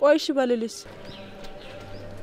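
A woman speaking a short, sharp phrase in the first moment, followed by a low, steady background hum.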